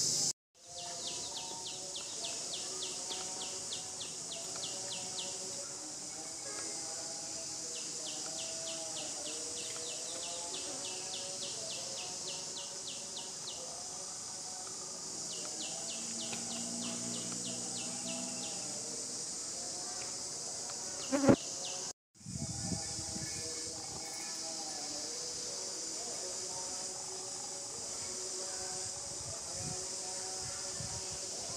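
Insects buzzing steadily in a high, hissing chorus, with runs of fast, even pulsed chirping a few seconds long laid over it, and faint wavering calls lower down. One short sharp sound about 21 seconds in is the loudest thing, and the sound drops out for an instant twice.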